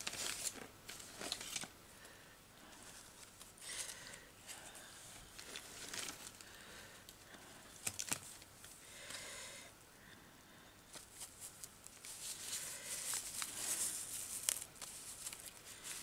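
Paper and lace craft scraps being rummaged and handled on a table: faint rustling and crinkling with scattered small taps and clicks, and a longer stretch of rustling about three-quarters of the way through.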